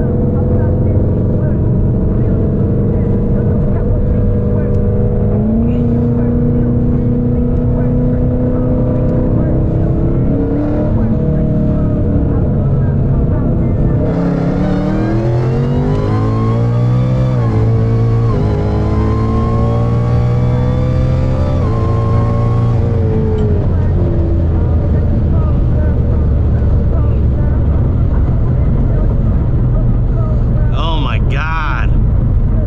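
Roush Mustang's V8 heard from inside the cabin, cruising, then pulling at wide-open throttle from about halfway in. The revs rise steeply, with several quick upshifts dropping the pitch before the driver lifts and it settles back to a steady cruise. A high whine rises with the revs, and the rear tyres are spinning on the cold road.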